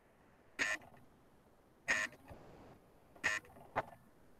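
Video-call audio breaking up: four short, garbled bursts of sound about a second and a half apart, the last two close together, with near silence between them. This is the sign of a dropping connection.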